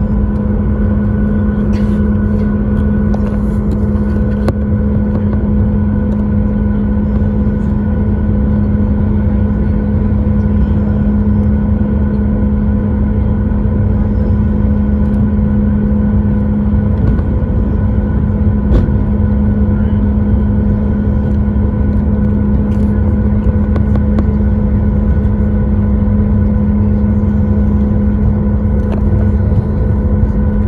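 Boeing 737-8 MAX's CFM LEAP-1B engines at low taxi power, heard inside the cabin as a loud, steady hum with a low rumble and a few faint clicks. The pitch stays level throughout, with no spool-up for takeoff.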